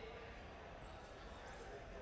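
Faint arena ambience: distant, indistinct voices echoing in a large hall, with a couple of faint basketball bounces on the hardwood court about a second in and again about half a second later.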